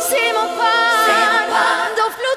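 Music: a woman singing an Albanian ballad with long, wavering held notes and little accompaniment beneath her voice, with no bass.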